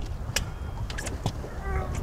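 Wind rumbling on the microphone, with a few sharp clicks and knocks as the netted catfish and hand scale are handled on the boat deck, and a brief voice near the end.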